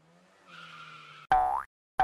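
Cartoon sound effects: a faint hiss of skidding tyres, then a loud springy boing about 1.3 s in that rises in pitch and stops short, with a second boing starting at the very end.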